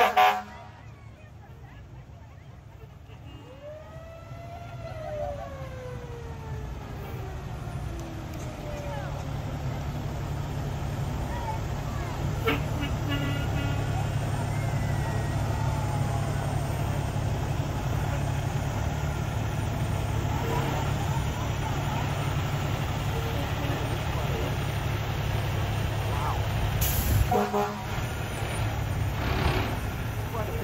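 A fire engine's horn blasts right at the start. Its mechanical siren then winds up briefly and coasts down in a long falling pitch over several seconds, over the steady low rumble of passing diesel truck engines. A short burst of sound comes near the end.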